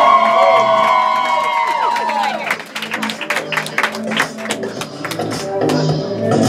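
Studio audience cheering with a long, held whoop that trails off about two seconds in, followed by scattered clapping, over background music with repeating bass notes.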